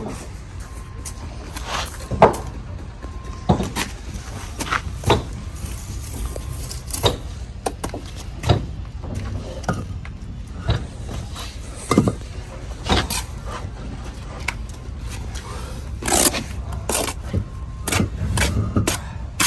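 Steel trowel scraping and knocking against mortar and a concrete block, with irregular short scrapes and taps about every second as mortar is spread and a block's end is buttered.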